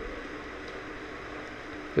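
Steady background hiss with a faint hum: the room tone of the recording between words.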